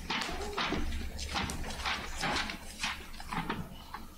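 Book pages being turned, heard as a quick, irregular series of short paper rustles and light clicks.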